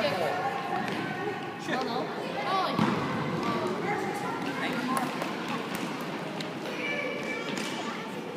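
Players and spectators calling out in an echoing sports hall, with a few thuds of the futsal ball being kicked and bouncing on the hard court floor.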